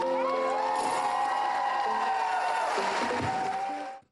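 Live pop concert music, ending on a long held note, with the audience cheering beneath it. The sound cuts off abruptly at the very end.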